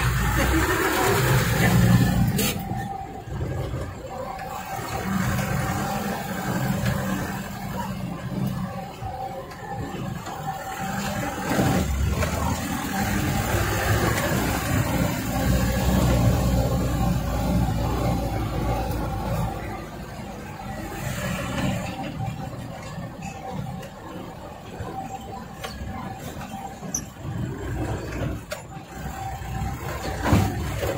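Small dump truck's diesel engine running while driving, heard from inside the cab, its rumble swelling and easing with the throttle.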